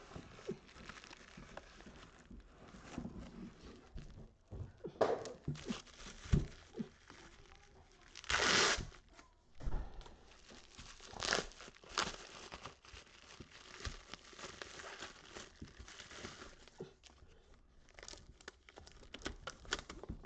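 Cardboard mailing box being torn open, then bubble wrap being crinkled and pulled off a stack of plastic-cased graded cards, in a run of scattered rustles and tearing sounds. The loudest burst comes about eight seconds in.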